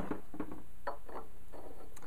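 A few faint light clicks from a white PVC threaded coupling being picked up and handled by gloved hands, over a steady low hum.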